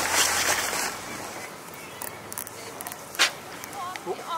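A common dolphin surfacing and blowing: one short, sharp puff of breath about three seconds in, over a soft hiss of water and air. A brief rush of noise fills the first second.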